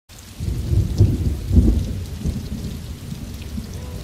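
Rumbling thunder with rain, swelling about a second in and again soon after, then dying away.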